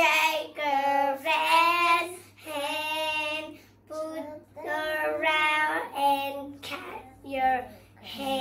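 Young children singing an English action song without accompaniment, in short phrases of held notes. The lines are about turning around, clapping and shaking hands.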